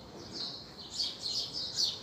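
Small birds chirping: a run of short chirps, each falling in pitch, about two a second.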